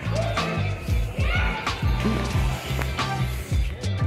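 Background music with a steady drum beat over a bass line.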